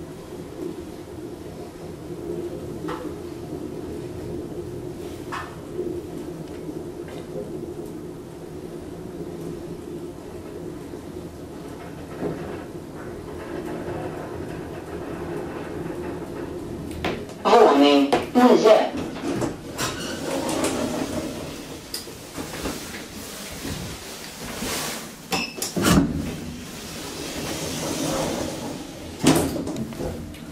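Asea-Graham traction elevator running, heard from inside the car: a steady hum with a few light clicks, then louder clunks and knocks in the second half, the sharpest near the end.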